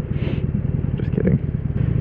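Harley-Davidson Forty-Eight's air-cooled 1200 cc V-twin running steadily at a light cruise, a low, even pulsing heard from the rider's own helmet-mounted microphone.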